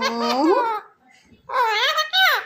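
A pet talking parakeet making babbling, laugh-like vocal sounds: a gliding, pitched stretch, a short pause, then a second stretch starting about a second and a half in.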